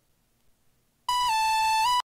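A single high, bright synthesizer lead note from GarageBand starts abruptly about a second in. It dips slightly in pitch, glides back up, and then cuts off sharply.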